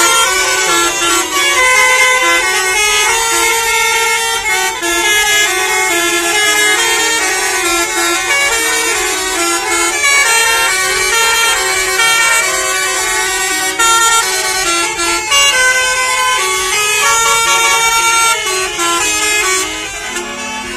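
Tour bus's basuri telolet horn playing a tune, its notes stepping up and down every fraction of a second without a break.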